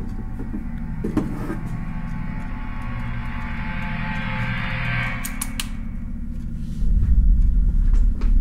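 Horror film soundtrack: a low droning hum under a swelling hiss that builds to a peak about five seconds in, a few sharp clicks, then a loud low rumble that starts near the end.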